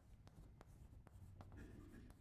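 Chalk writing on a blackboard: a faint series of short taps and scrapes as the chalk strikes and drags across the slate.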